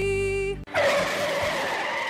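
A jingle's held final chord cuts off about a third of the way in, then car tyres screech in a hard skid, the sound of a car about to crash.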